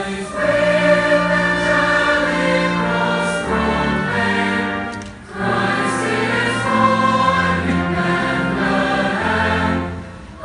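Large mass choir singing in long held chords. The phrase breaks off briefly about halfway through and again at the end.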